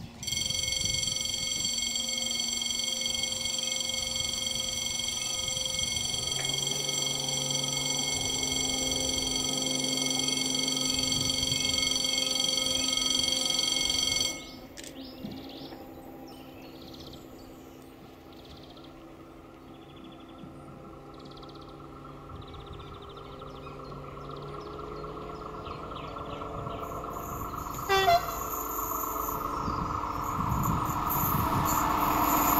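Distant diesel railcar engine, an X2800-class 600 hp unit, heard approaching along the line and slowly growing louder through the second half. For the first half a steady high-pitched whine sits over it and cuts off suddenly, and a brief sharp sound stands out near the end.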